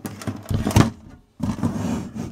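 Handling noise: a few knocks and rubbing as the metal instrument case of a home-built CRT tester is shifted round on a wooden bench.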